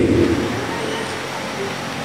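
A pause in an amplified speech in a large hall: the last word's echo fades away over the first half second, leaving a low, steady room noise.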